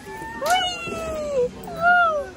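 A young woman's high-pitched squeals as she rides down a metal playground slide: a long falling cry from about half a second in, then a shorter rising-and-falling one near the end, with a sharp click at the start of the first cry.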